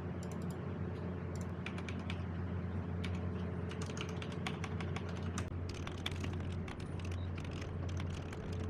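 Typing on a mechanical keyboard: a few scattered keystrokes at first, then quick, continuous clicking from about three seconds in. A steady low hum runs underneath.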